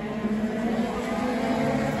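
Race car engines running out on the circuit, a steady engine note with the pitch edging up near the end.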